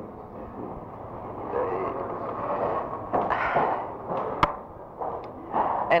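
A pause in a recorded interview: steady low background noise with a brief louder patch a little past three seconds, and a single sharp click about four and a half seconds in.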